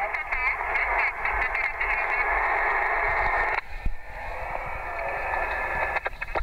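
Radio transceiver's speaker tuned to the 27 MHz (11 m) band: band-limited static and hiss with a faint, garbled voice from a distant station coming through, dropping to a weaker hiss about three and a half seconds in.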